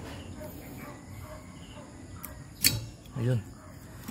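A single sharp click about two-thirds of the way in as the old wiper blade's clip snaps free of the wiper arm's hook, over low background noise.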